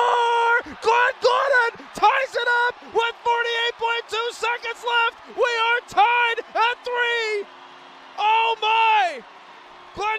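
Hockey play-by-play announcer shouting excitedly after a goal: a string of short, high-pitched cries, his voice strained well above normal speaking pitch.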